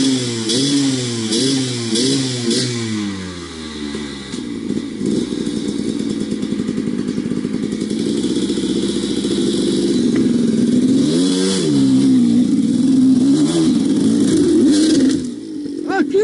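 Enduro dirt bike engine revved in about five quick blips of the throttle, then held at steady high revs, rising again about eleven seconds in and staying high almost to the end.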